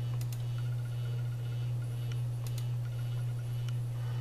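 Steady low hum with a few faint clicks of a computer mouse button as a menu is opened.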